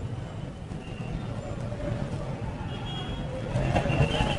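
Outdoor street ambience: a steady low rumble like passing traffic, swelling slightly near the end.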